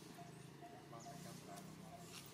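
Faint outdoor background: a low steady hum with a soft short note repeating a few times a second.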